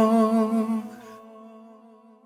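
Music track: a singer's voice holding one long hummed note with a slight waver, fading away to silence over about two seconds.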